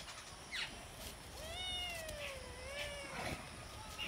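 A kitten meowing once, a long drawn-out meow of nearly two seconds that dips and rises slightly in pitch, with a couple of faint short high chirps around it.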